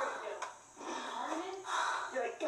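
A young woman's voice gasping and laughing in surprised delight, with a brief lull about half a second in.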